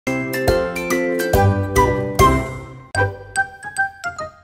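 A short, cheerful logo jingle of bright, chiming notes over a bass line, which stops suddenly about three seconds in and gives way to lighter, sparser plinking notes.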